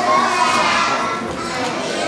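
A class of pre-kindergarten children's voices together in unison.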